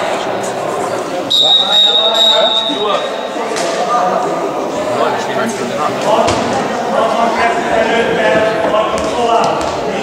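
A referee's whistle blows one steady, shrill blast lasting about a second and a half, starting just over a second in. Players' and spectators' voices echo around the sports hall.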